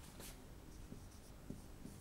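Faint strokes of a marker pen writing on a whiteboard, a few light scrapes and taps.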